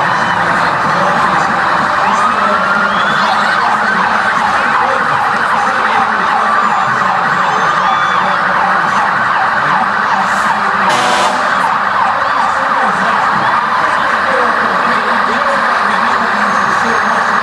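Several police sirens sounding at once, their pitches sweeping rapidly up and down over one another, from a column of police motorcycles and cars. A brief burst of noise cuts through a little after ten seconds.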